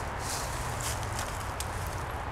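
Faint rustling and light crackles of dry fallen leaves underfoot, a few scattered ticks, over a steady low background rumble.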